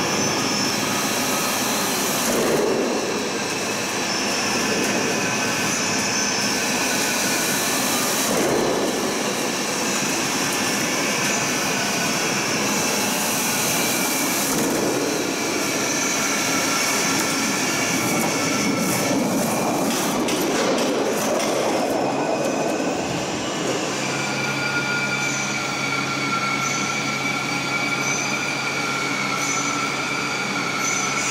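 Step tile roll forming machine running, with its gearbox-driven roller stations and decoiler feeding steel roofing sheet through. It makes a steady mechanical hum with several held whining tones and a swell every six seconds or so.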